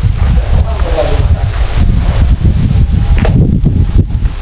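Wind buffeting the microphone: a loud, fluttering low rumble with a hiss over it.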